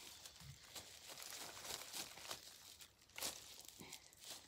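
Faint rustling and crackling of soil, roots and dry leaves as strawberry plants are pulled up by hand beside a digging fork, with a few soft knocks, the clearest about three seconds in.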